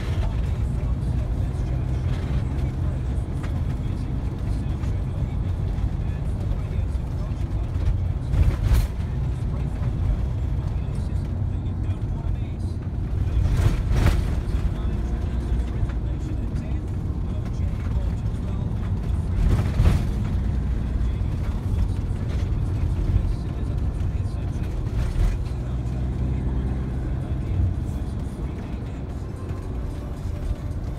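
Inside a moving car's cabin: steady engine and tyre rumble while driving a single-track road. Three brief knocks come through, at about nine, fourteen and twenty seconds in.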